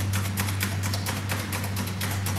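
A steady low hum with a scatter of quick, irregular clicks, several a second.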